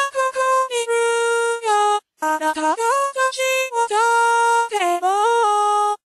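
An UTAU voicebank's synthesized female singing voice, converted from CV to VCV, sings sustained notes that step up and down in pitch, with a short break about two seconds in. Her notes start on time, not too early, because the envelopes have been reset.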